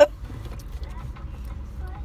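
Steady low rumble of a car's engine and road noise heard from inside the cabin while driving, with a faint steady tone above it.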